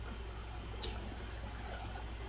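Steady low hum of background room or recording noise in a pause between words, with one brief sharp click a little under a second in.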